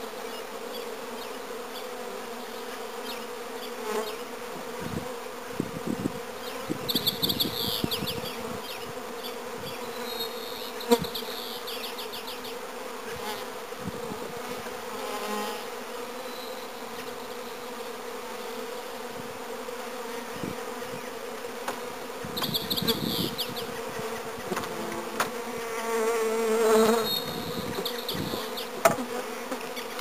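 Swarm of honeybees buzzing around an open hive as a package is installed: a steady hum that swells louder at times, with a few light knocks.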